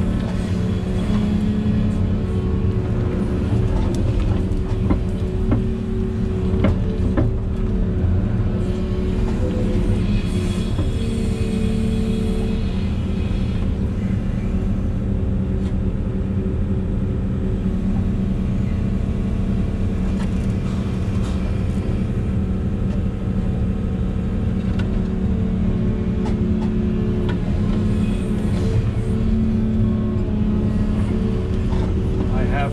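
Volvo EC380E excavator's diesel engine and hydraulics running steadily under load, heard from inside the cab while the bucket digs soil, with a few short clicks and knocks.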